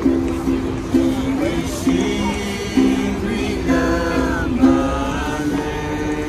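Ukulele strummed, with a new chord about once a second. A voice sings or calls over it for a couple of seconds around the middle.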